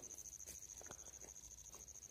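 Near silence: a faint, steady high-pitched tone with a couple of faint ticks.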